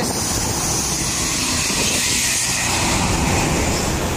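Heavy trucks and a coach passing close by on a multi-lane highway: a steady, loud rush of tyre and engine noise.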